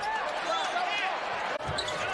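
Basketball arena sound from a game broadcast: a murmur of crowd and bench voices. After a cut near the end come a few low thuds of a basketball being dribbled on the hardwood court.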